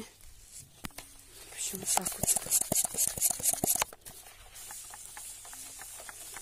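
Hand sprayer misting strawberry plants: a quick run of short spray hisses with clicks, about five a second, from about one and a half to four seconds in, then a fainter steady hiss.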